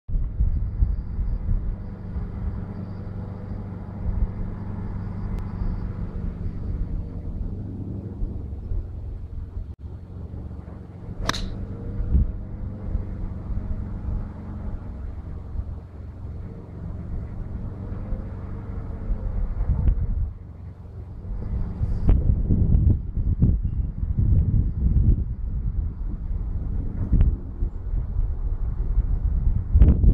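One sharp crack of a 4 iron striking a golf ball off the tee, about eleven seconds in, over a low, uneven outdoor rumble that swells in the second half.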